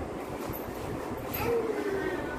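Cardboard parcel being handled and opened, the carton scraping and rustling as a boxed ring light slides out of it, with a louder scrape about one and a half seconds in.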